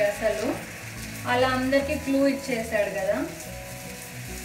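Food sizzling on a hot griddle pan (tawa) as a round of batter or dough cooks and is pressed with a spatula, a steady hiss. A melody sounds over it from about a second in.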